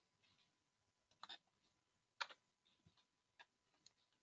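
Faint, scattered clicks of a computer mouse, five or six short sharp clicks with the loudest a little over two seconds in, against near silence.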